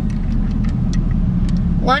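Steady low engine and road noise of a moving car, heard from inside the cabin.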